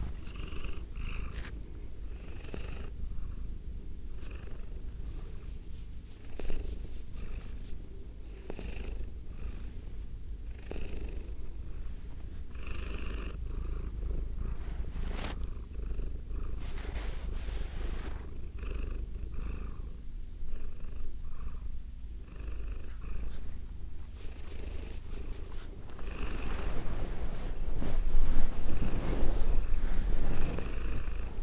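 Domestic cat purring steadily, with short soft higher-pitched noises at intervals; the purring grows louder in the last few seconds.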